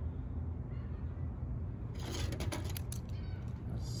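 Steady low outdoor background rumble, with a brief flurry of clicks and rustling about two seconds in and again near the end as the maple seedling's bare roots and the scissors are handled.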